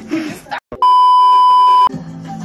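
A loud, steady, high-pitched censor bleep lasting about a second, inserted in editing over a word. It starts a little under a second in, just after a short breathy sound and a brief cut to silence.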